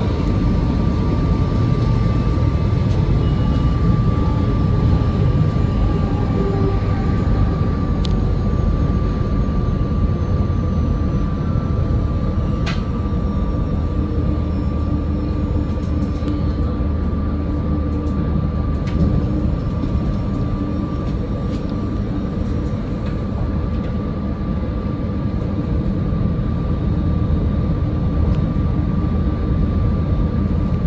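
SEPTA electric commuter train running at speed, heard from the cab: a steady low rumble of wheels on rail with a thin, steady whine throughout. A couple of brief sharp clicks come through in the first half.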